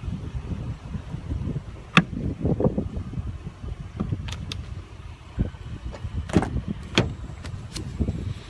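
Plastic fuel filler door on an SUV being swung shut and pressed closed: several sharp clicks and taps, the loudest a little past the middle of the clip, over a low rumble.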